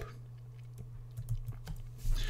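A steady low hum with a few faint, scattered clicks, like keys or a mouse being tapped, about halfway through.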